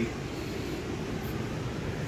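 Steady rushing of a creek's flowing water, an even hiss with no breaks.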